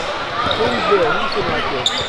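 Basketball dribbled on a hardwood gym floor, over crowd voices and chatter in an echoing gymnasium.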